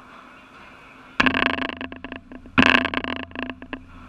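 Two loud knocks close to the microphone, about a second and a half apart, each followed by a short rattling clatter, typical of the padel court's glass-and-mesh enclosure being struck near the camera.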